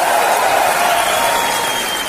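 A loud, steady rushing noise with a faint high whistling tone through it, easing slightly in level.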